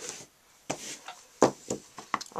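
Hands handling craft supplies on a tabletop: a soft rub or rustle, then a sharp click and a couple of lighter clicks and knocks.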